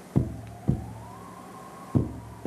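Drama soundtrack: dull, low thuds coming in pairs about half a second apart, like a slow heartbeat, under a single high, wavering tone that slowly rises and falls.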